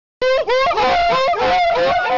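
A group of men calling out together in high, whooping cries, with quick repeated rising swoops in pitch, about three a second. It starts suddenly just after the beginning.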